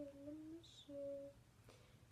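A woman humming softly to herself: two short held notes in the first second or so, then quiet room tone.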